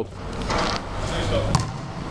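A basketball bouncing once on a hard gym floor, a sharp knock about one and a half seconds in, with faint voices in the background.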